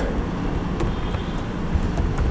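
Steady background noise with a low rumble, and a few faint clicks of keyboard keys being typed.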